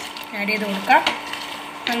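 Wooden spatula stirring batter-fried cauliflower florets into a thick, sizzling sauce in a non-stick kadai, with a couple of knocks of the spatula against the pan.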